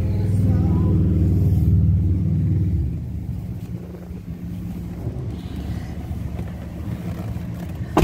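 2011 Lincoln MKX's 3.7-litre V6 idling, heard from inside the cabin as a steady low hum. It is louder for the first three seconds, then settles lower. A single sharp knock comes at the very end.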